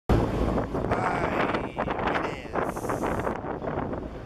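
Wind buffeting the microphone on a moving boat, over a steady low rumble from the boat. A brief high hiss comes a little before three seconds in.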